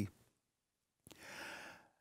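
A man's faint breath, lasting under a second, about a second in, during a pause in his speech.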